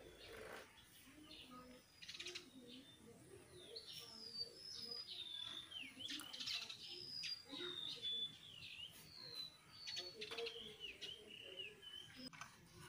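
A bird chirping: a run of short, high whistled notes, many sliding down in pitch, coming thickest from about four seconds in.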